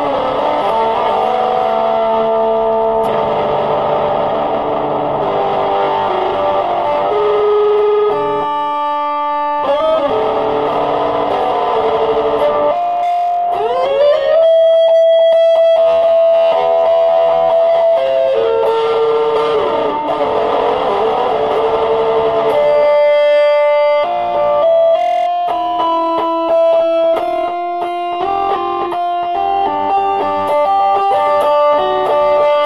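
Electric guitar playing single-note melodic lines. About halfway through it bends up into a long held note, and the notes come quicker near the end.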